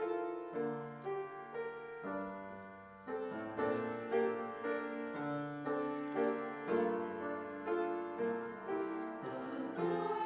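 Piano playing a slow accompaniment introduction in held chords, changing about once or twice a second.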